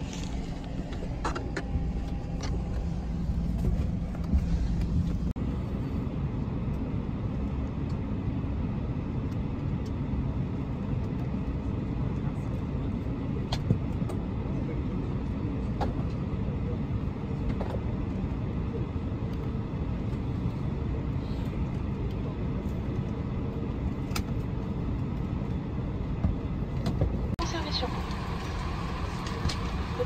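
Steady low rumble inside a parked Airbus A321 cabin at the gate during boarding, with faint passenger voices and a few light clicks and knocks. The background shifts abruptly about five seconds in and again near the end.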